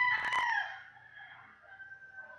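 A drawn-out pitched animal call, held steady and then sliding down in pitch as it fades about three-quarters of a second in.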